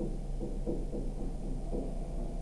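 Stylus strokes on a tablet as handwriting is written: dull, irregular scuffs and taps over a steady low electrical hum.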